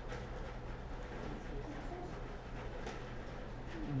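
Quiet room tone with a steady low electrical hum, a few faint clicks and a faint, distant voice.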